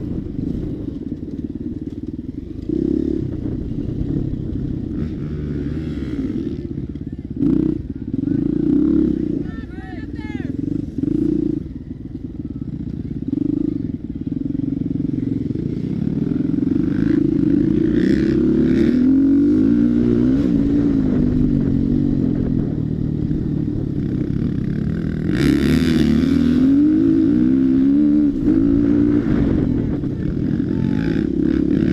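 Dirt bike engine running close to the camera, the revs rising and falling again and again as the rider works the throttle over a rough trail, with a sharp knock about seven seconds in.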